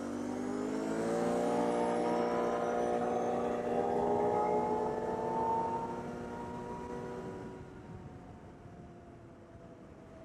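Can-Am Outlander 850 ATV's V-twin engine pulling away under light throttle, its pitch rising steadily for about five seconds. It then holds and eases off, getting quieter near the end.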